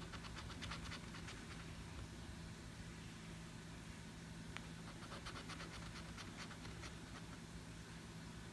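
A silver coin scraping the coating off a scratch-off lottery ticket: two short, faint bursts of quick strokes, one right at the start and one from about five to seven seconds in.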